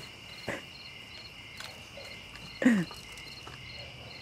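Insects chirping steadily outdoors: a continuous high trill with a short chirp repeating about three times a second. A brief knock comes about half a second in, and a short falling voice-like sound about two and a half seconds in.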